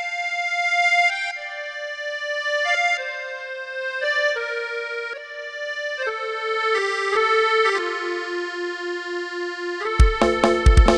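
Instrumental intro to a Lao lam song: one melodic line of held, reedy keyboard notes that steps down in pitch, with no drums. Drums and bass come in right at the end.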